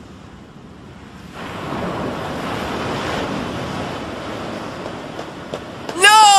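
Ocean waves surging: a rushing noise that starts about a second and a half in, swells, then slowly fades.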